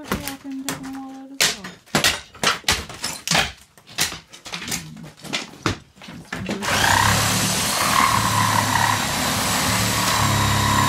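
Repeated knocks and cracks of old wood lath and plaster being torn off a wall, with debris clattering down, for about six and a half seconds. Then a handheld power tool starts and runs steadily at full speed.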